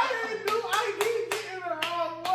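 Hands clapping about five times, unevenly, over a drawn-out laughing voice.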